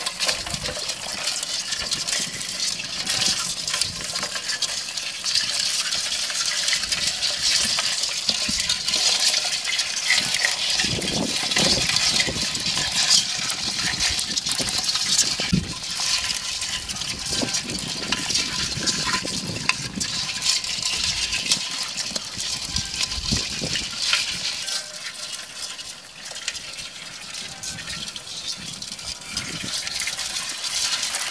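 Water splashing and dripping off a fishing net as its catch of small fish, crabs and eels is shaken out into a metal basin floating in shallow water, with many small patters and ticks throughout. A few low knocks come in the middle.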